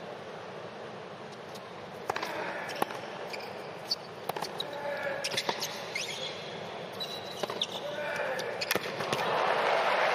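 A tennis rally on a hard court: sharp pops of racket strings striking the ball every second or so, with a few sneaker squeaks, over a steady murmur of a large arena crowd. Near the end the crowd noise swells as the point is won.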